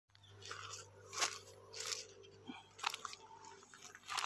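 Rustling, crunching handling noise close to the microphone: a few short scrapes about a second apart, over a faint steady low hum.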